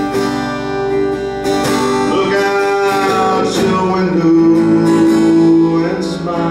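Acoustic guitar strummed and picked, playing a steady song.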